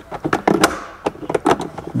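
A razor blade cutting a small protrusion off a plastic fender liner: a run of irregular sharp clicks and scrapes as the blade works through the plastic, with a longer scrape about half a second in.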